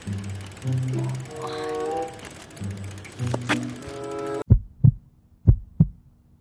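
Soft background music with held notes that cuts off about four and a half seconds in. A heartbeat sound effect follows: two double low thumps, about a second apart, over silence.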